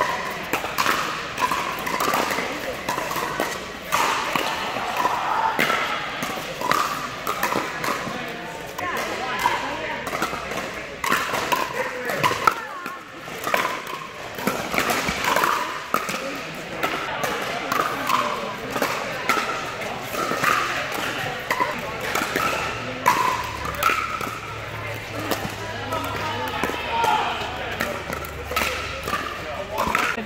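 Pickleball paddles hitting a plastic pickleball again and again in rallies, short sharp pops with ball bounces on the court, over a background of many people's voices.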